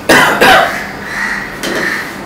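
A person coughing, two quick, loud coughs in the first half-second.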